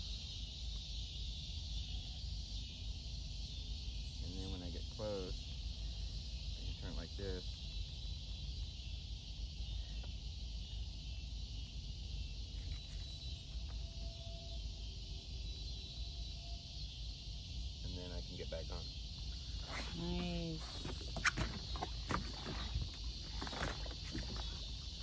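Steady high hiss over a low rumble, with a few brief stretches of quiet, indistinct talk. A single sharp knock sounds near the end.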